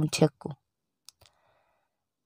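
A storytelling voice speaks for the first half second, then pauses, with one faint click about a second in.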